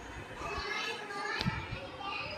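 Children's voices faintly in the background, with a single sharp click about one and a half seconds in.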